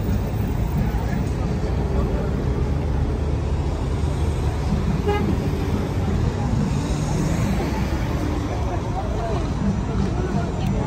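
Busy street traffic noise with the chatter of a crossing crowd, and a brief horn toot about five seconds in.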